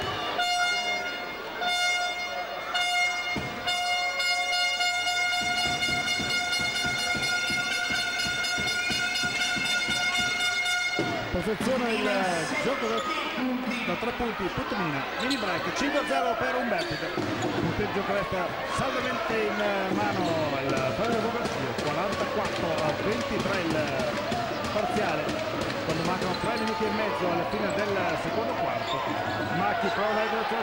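A single steady horn note sounds in the basketball arena for about ten seconds, then cuts off. After it comes the noise of a crowd in a large hall, many voices talking and calling at once, with basketballs bouncing on the court.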